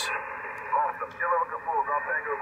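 Single-sideband voice from another ham station heard through a Yaesu FTdx5000MP receiver on 40-metre lower sideband: narrow, band-limited talk over steady hiss. The receive carrier insertion point is set 200 Hz high, which cuts the lows and makes the voice sound thin, with more high emphasis.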